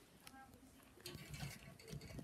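Near silence: room tone, with faint rustling from about a second in.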